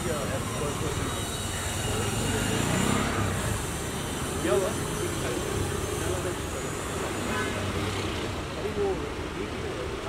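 Street traffic noise running steadily under indistinct chatter from a crowd of people.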